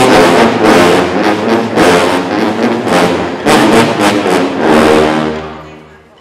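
A sousaphone ensemble playing a run of loud brass chords, the last one fading out near the end.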